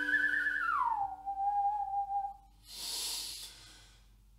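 A whistled melody ends the ukulele cover: one clear note glides down and holds for about a second over a ukulele chord left ringing and fading. Near the end comes a short, soft exhale.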